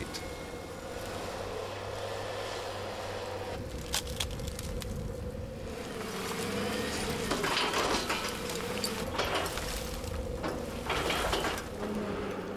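Wheel loader's diesel engine running under load with a steady whine while its bucket tips waste onto a compost heap, with scattered knocks and rattles of the load.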